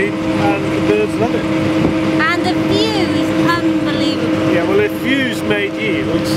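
Wind buffeting the microphone, a dense rumble with a steady droning hum underneath and short voice-like sounds now and then.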